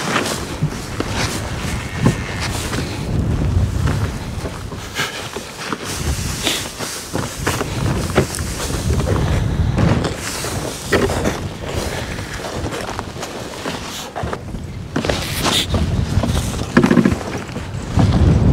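Wind buffeting the microphone in a low rumble, with irregular crunching footsteps in snow.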